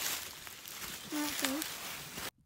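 A hound scuffling about in dry leaf litter, with the leaves rustling and crackling faintly. A brief voice cuts in about a second in.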